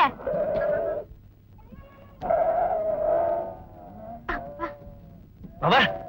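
Goats bleating: two long bleats, then a few shorter ones after about four seconds.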